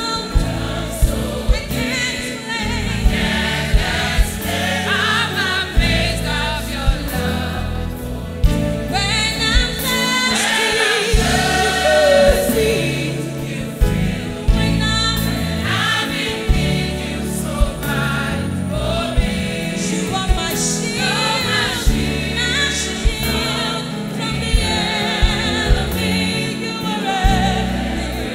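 A gospel choir with a woman singing lead at a microphone, singing a praise song over a live band with bass and a steady drum beat.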